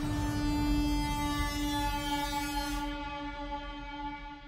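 A held synthesized tone with a stack of overtones over a low rumble, the sound effect of a video transition; its upper overtones fade out about three seconds in.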